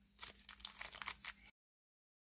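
Foil trading-card pack wrapper crinkling and rustling under a hand in a quick run of crisp rustles. The sound cuts off abruptly to dead silence about a second and a half in.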